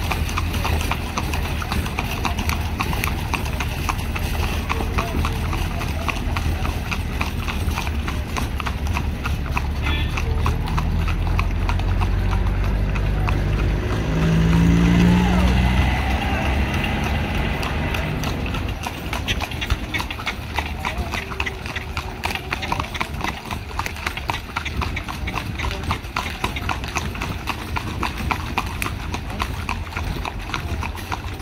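Carriage horse's hooves clip-clopping steadily on asphalt. About halfway through, a motor vehicle passes close by, the loudest moment.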